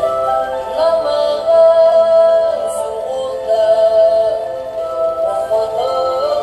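A young boy singing a slow song into a microphone, holding long high notes with slight vibrato and gliding up into new notes about a second in and again near the end.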